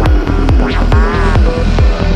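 Psytrance track: a steady four-on-the-floor kick drum, a little over two beats a second, with a rolling bass line between the kicks, ticking percussion on top and short synth glides bending up and down above.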